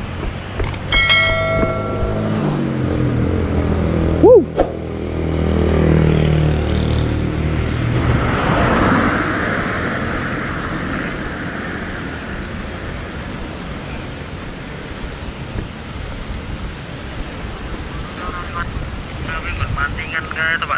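A road vehicle passing on the bridge: its engine hum builds, peaks and fades away over several seconds, with a single sharp knock about four seconds in.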